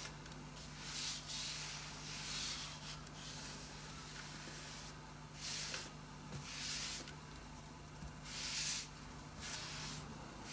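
Hand-held smoothing tool swishing across wet, pre-glued wallpaper in about six separate strokes of half a second to a second each, pressing the paper flat onto a particle-board top. A steady low hum runs underneath.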